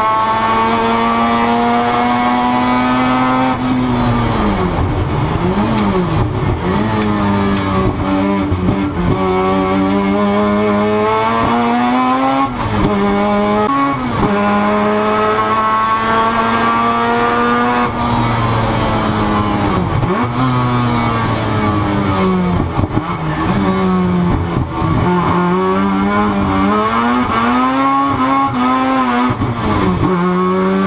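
Mazda RX-7's 13B rotary engine at racing speed, heard from inside the cockpit. The revs climb in each gear and fall sharply at every gear change, many times over, with the pitch dipping and flicking up again in the slower stretches.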